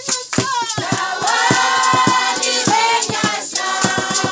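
A group of voices singing together with steady rhythmic hand clapping in time.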